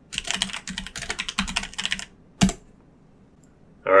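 Typing on a computer keyboard: a quick run of keystrokes for about two seconds, then a single louder click a moment later.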